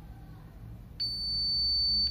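Victor 990C digital multimeter's continuity buzzer giving a steady high-pitched beep that starts abruptly about a second in and lasts about a second. The beep sounds as the probes touch two pins of a tactile push-button switch, showing that those pins are connected.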